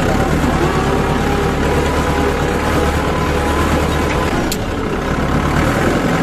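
Tractor diesel engine running steadily, heard close up from the driver's seat, with a short click about four and a half seconds in.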